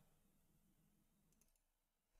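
Near silence: room tone, with a couple of faint clicks in the second half.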